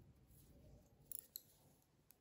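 Knitting needles clicking faintly as stitches are knit, a few light clicks a little past a second in, over near silence.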